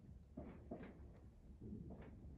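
Near silence: quiet room tone with a low hum and a few faint, short soft sounds.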